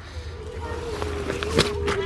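Microphone handling and wind rumble while a small child jumps from a hay bale, with a short thud about one and a half seconds in as he lands on dirt. A faint steady hum runs underneath.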